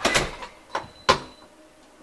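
A door being opened and shut: a knock and rub at the start, a short scrape, then a sharp bang about a second in as it closes.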